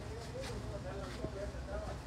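Men's voices talking indistinctly in the background, over a steady low rumble.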